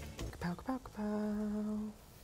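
A man humming a short tune: two brief notes, then one long note held steady for about a second.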